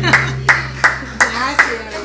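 Hand clapping at the end of a karaoke song: about five claps at roughly three a second, with people calling out between them. The backing track's last low note is held underneath.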